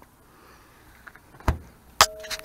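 A Bradley electric smoker's door thumping shut once, about one and a half seconds in, over a faint steady background.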